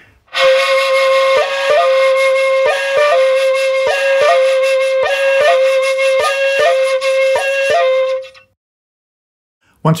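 Bamboo shakuhachi playing the koro koro two-change exercise. It holds one note, and about six times switches quickly to the other ko chord and back with the fingers, each change and its return coming as a pair of quick flicks. The note fades out about eight seconds in.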